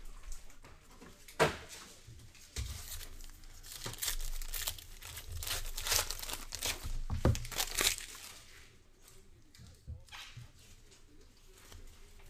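Foil trading-card pack being torn open and crinkled by hand, with a few sharp clicks from handling the cards; quieter over the last few seconds.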